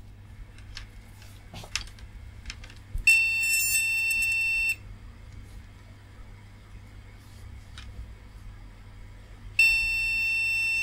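MSI KM2M Combo motherboard's beeper giving a long, steady beep about three seconds in, lasting under two seconds, and another starting near the end. This repeating long beep is the POST warning that the board is not detecting its DDR RAM.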